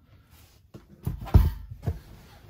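A deep thump a little over a second in, followed by a short knock, as the removed RV converter/charger unit is set down.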